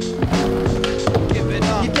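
Hip-hop track with a steady beat over a skateboard rolling on its wheels, with the tail popping as the board leaves the ground near the end; rapping comes in at the very end.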